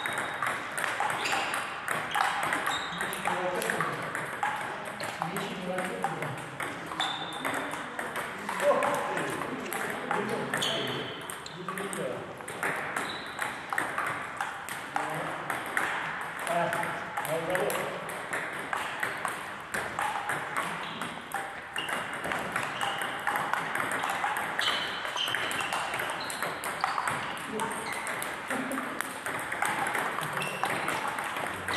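Table tennis balls clicking on paddles and tables in rallies, many quick hits in irregular succession, with voices in the background.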